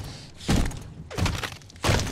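A man stomping his foot down on another man lying on the floor: three heavy, dull thuds about two-thirds of a second apart, part of a steady run of stomps.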